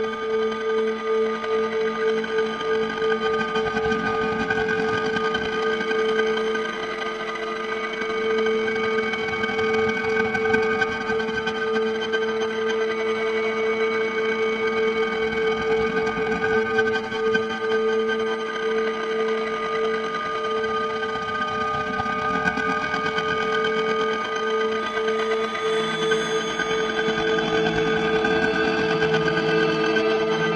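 Electronic drone music under a transition: several held tones layered together, the strongest a low hum that pulses slightly, with a grainy, rough texture over the top.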